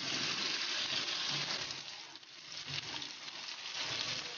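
Cubed capsicum and green chillies sizzling in hot oil in a nonstick wok while a silicone spatula stirs them. The steady sizzle eases a little past the middle, then picks up again.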